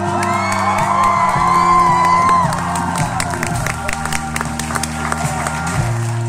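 A live band holds sustained low chords while the concert crowd cheers and whoops, with scattered claps. The chord changes near the end.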